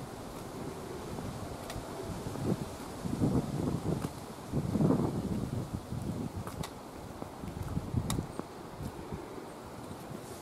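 Wind buffeting the microphone in uneven gusts, with a few faint sharp ticks.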